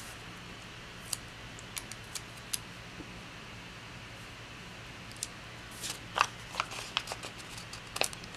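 Paper handled by hand: scattered soft ticks and rustles from journal pages and a sticker sheet, busier about six seconds in, over a faint steady hum.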